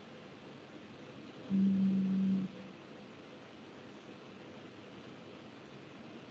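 A single low, steady buzz lasting about a second, starting and stopping abruptly about one and a half seconds in, over a faint steady hiss and thin hum on the call's audio line.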